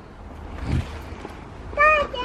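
A short, high-pitched call near the end, over low rumbling noise from wind and handling with a dull thump about halfway through.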